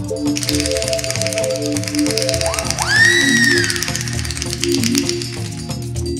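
Live keyboard music: a repeating pattern of short notes over a bass line, with a fast ticking rhythm. About two and a half seconds in, a single pitched tone swoops up, holds briefly and falls away.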